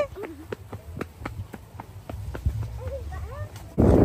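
Footsteps crunching on a dry dirt path strewn with dead corn leaves, a quick, even run of steps about four a second. Near the end the sound cuts abruptly to loud wind noise on the microphone.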